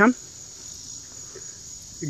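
Steady, high-pitched chorus of insects chirring.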